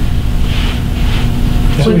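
A steady low rumble of room or microphone noise, with a man starting to speak near the end.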